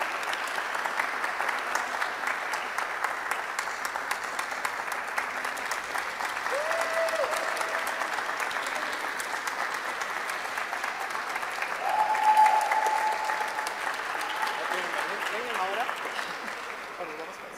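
Audience applauding steadily. Two brief held tones, likely voices calling out, rise above the clapping about seven and twelve seconds in, the second one louder.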